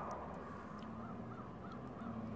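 A bird calling three times in quick succession, short high calls over a low steady hum.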